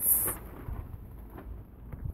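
A brief hissing burst at the start, then a faint low rumble of microphone noise with a few soft taps.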